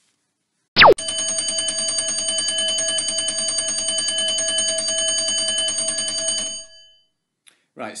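Countdown timer's end alarm, a bell-ringing sound effect: a brief falling swoop about a second in, then a rapidly repeating bell ring held for about five and a half seconds before it stops.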